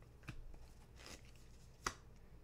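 Tarot cards being handled and laid down on the table: a few faint rustles and soft taps, then one sharp tap shortly before the end.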